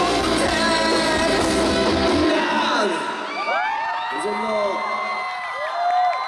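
A live rock band and singer playing the last bars of a song, which stops about two seconds in. A crowd then screams and cheers, with many high voices whooping up and down.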